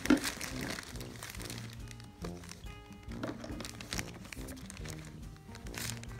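Light background music, with the crinkling rustle of a paper gift bag being reached into and a box drawn out.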